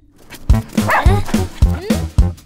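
Cartoon background music with a steady beat. It breaks off at the start and comes back about half a second in, with short, yelping, dog-like cartoon cries sliding up and down in pitch over it.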